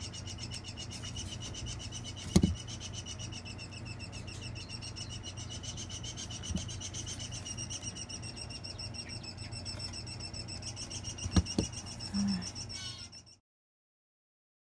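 A steady high-pitched trill at two pitches over a low hum, broken by a few sharp clicks from dissecting instruments being handled. The loudest clicks come about two seconds in and again near the end. The sound cuts off just before the end.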